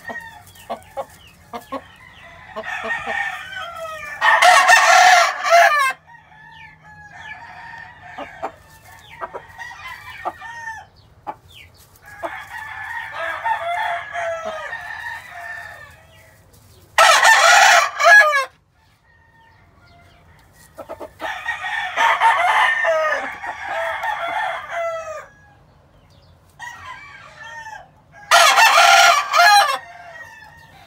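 Gamefowl roosters crowing and clucking. Three loud, close crows come about eleven to twelve seconds apart, near the start, the middle and the end. Fainter crows and clucks from other roosters fill the gaps between them.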